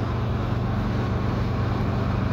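Steady engine and road noise heard from inside the cabin of a moving vehicle, with a constant low drone.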